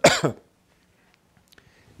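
A man coughs once, briefly.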